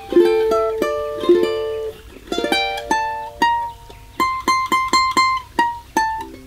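Tenor ukulele (Aostin AT100) strung with fluorocarbon fishing-line strings, fingerpicked: a chord melody of plucked chords and single ringing notes. In the second half there is a run of quick repeated high notes, about four a second.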